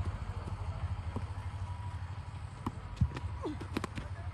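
Steady low outdoor background hum with a few faint, scattered sharp taps, the loudest about three seconds in.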